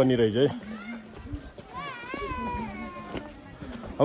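A man's voice briefly at the start. Then, in a quieter stretch, a high-pitched, wavering voice sounds in the background for about a second, like a child's voice.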